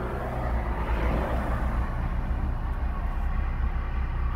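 Engine and tyre noise heard inside the cab of an older vehicle driving at low speed: a steady low rumble with road hiss.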